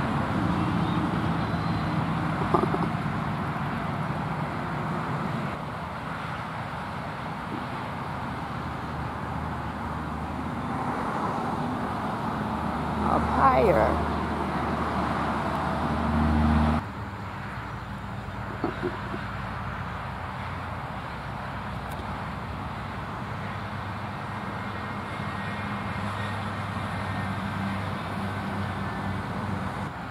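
Steady road-traffic noise with a low engine hum that builds and then cuts off suddenly about two-thirds of the way through. A short rising-and-falling sound comes about halfway through.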